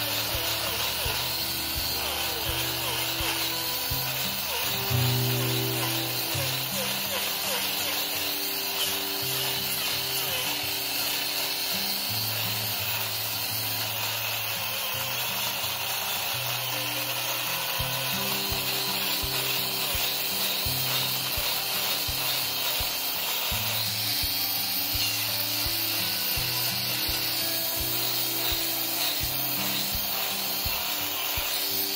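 Hoof-trimming grinder with an eight-tooth chain-blade disc running steadily and rasping down a goat's hoof wall and sole. Background music with low notes that change about once a second plays under it.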